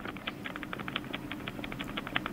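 A rapid run of light clicks, about ten a second, from a video doorbell's button being jabbed over and over, picked up by the doorbell camera's own microphone.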